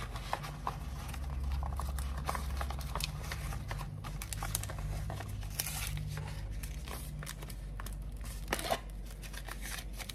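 Hands folding a wrapper around a parcel of glutinous rice and beef floss: irregular crinkling and rustling, over a low steady hum.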